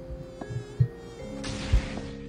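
Cartoon mosquito buzzing: a steady whine on several pitches at once, with a few soft low thumps. A burst of hiss comes in about one and a half seconds in.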